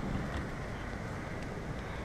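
Steady, even rushing noise with no distinct events, like wind or distant traffic on an outdoor microphone.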